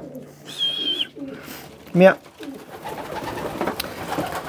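Racing pigeons cooing and moving about in a small loft, with a short high whistle about half a second in and a brief voiced call, heard as "meow", about two seconds in.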